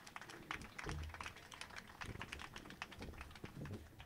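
Faint, irregular clicks and taps, with a few soft low thumps.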